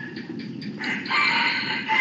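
A long bird call, likely a rooster's crow, starting about a second in and lasting about a second and a half.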